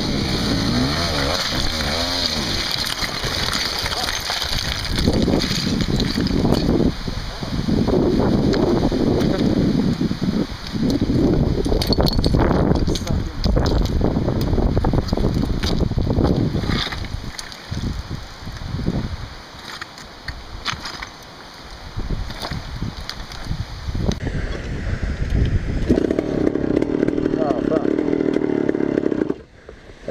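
KTM 380 EXC two-stroke dirt bike engine revving in uneven bursts, the throttle blipped on and off as the bike is worked up steep loose rock. The sound changes about three-quarters of the way through, settling into a steadier tone for a few seconds.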